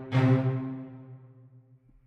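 A sampled instrument patch from Steinberg's Materials: Wood & Water library, the tail of a tempo-synced note sequence. One last pitched note sounds just after the start and rings out, fading away over about a second and a half.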